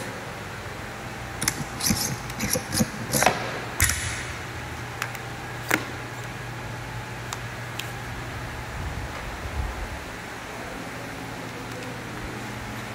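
A rubber bumper plate sliding onto a steel barbell sleeve and a collar being fitted. A cluster of clinks and knocks comes in the first few seconds, then a single sharp click and a few lighter ticks, over a steady low hum.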